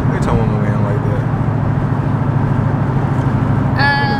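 Steady low drone inside the cabin of a 2020 Dodge Charger Scat Pack Widebody cruising on the road: its 392 (6.4-litre) Hemi V8 and tyre noise.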